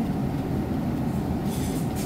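Refrigerated meat display case running: a steady low rumble with a faint, even hum on top.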